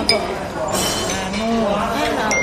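A sharp clink of a fork against a plate just after the start, with fainter ringing clinks of tableware near the middle, over background chatter of voices.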